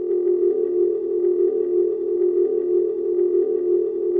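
A steady electronic tone held without change, with faint higher overtones.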